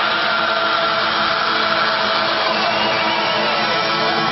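A Celtic punk band playing an instrumental passage live at full volume: a dense, steady wall of sustained instruments with no singing. Near the end one pitch slides downward.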